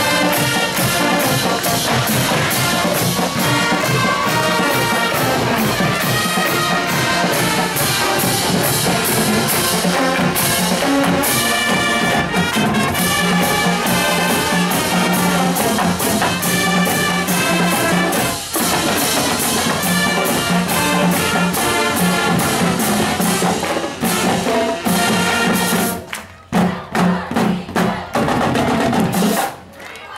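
Marching band playing: brass instruments and sousaphones over a drumline keeping a steady beat. Near the end it breaks into a few short, separated accented hits before stopping.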